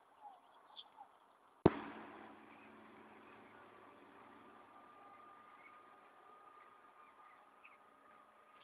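A few faint short bird chirps, then a single sharp bang about a second and a half in, followed by a faint steady hum with a thin high tone.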